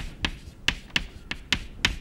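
Chalk clicking and tapping against a chalkboard as symbols are written, a run of about seven sharp clicks at uneven intervals.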